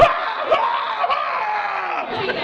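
A man's voice imitating an angry, wounded scream: one long, high yell that slowly falls in pitch.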